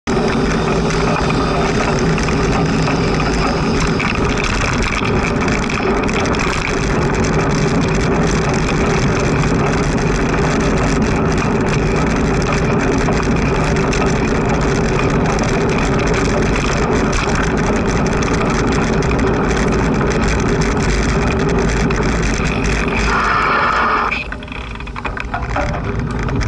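Wind and road noise on a moving bicycle's camera: a steady loud rush with a low hum from the tyres on tarmac. Near the end a brief high squeal sounds as the bicycle brakes at a junction, and the rush then falls away as the bike slows.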